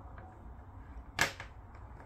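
Handling noise from a plastic smart plug and its cord: a single sharp plastic knock about a second in, over a low steady hum.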